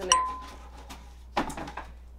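A sharp click followed by a clear, single-pitched ding that rings for about a second.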